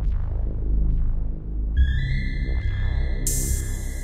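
Electronic soundtrack music with a low pulsing bass. Sustained high synth tones come in about two seconds in, and a bright hiss-like layer joins shortly before the end.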